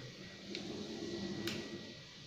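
Faint handling noise from a camera being carried and set up on a tripod: two soft clicks about a second apart.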